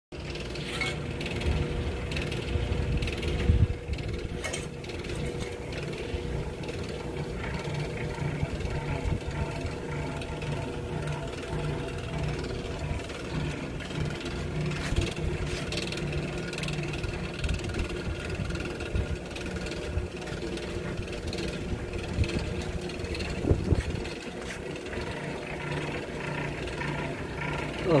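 Electric rotisserie motor and gear drive turning whole lambs on spits over charcoal, running steadily with a regular, ratchet-like rhythm, with a couple of louder knocks along the way.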